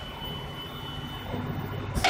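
Headset counting and packing machine running with a steady low hum and light mechanical noise, without any of its sharp stroke sounds.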